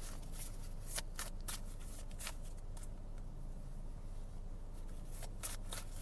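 A tarot deck being shuffled by hand: scattered soft clicks and riffles of the cards, bunched about a second in and again near the end, over a steady low hum.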